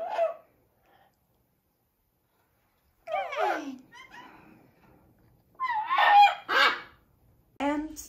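Double yellow-headed Amazon parrot calling: a falling call about three seconds in, then two louder calls in quick succession around six seconds in.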